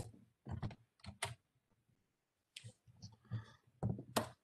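Short, irregular clicks from a computer keyboard, about eight spread over a few seconds, the last of them as the presentation advances to the next slide.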